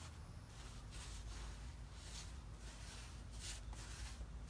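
Paintbrush strokes on the steps: faint, short scratchy swishes a few times a second, over a low background rumble.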